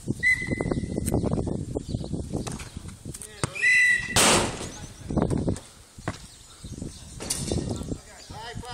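Indistinct voices of people outdoors, with a short high steady tone near the start and again midway, and a brief loud hiss about four seconds in.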